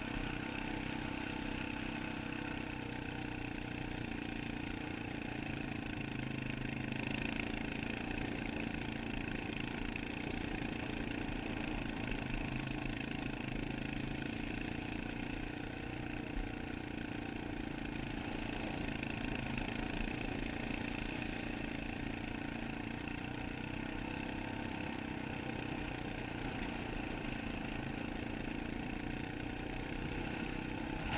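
Honda ATV's single-cylinder engine running steadily at a constant trail speed, heard from the rider's helmet.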